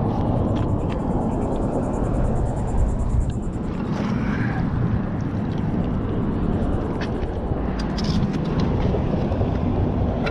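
Steady low rumbling noise throughout, with a few light clicks in the second half.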